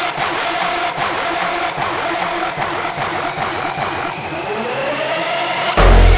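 Hardstyle track in a breakdown: the pounding bass kick drops out, leaving a dense, noisy sustained synth texture that PANN hears as engine-like, with a rising sweep building from about two-thirds of the way in. The heavy kick drum comes back in just before the end.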